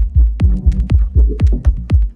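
Minimal techno track: a deep kick drum pulses about twice a second over a held low synth chord, with the high percussion thinned out.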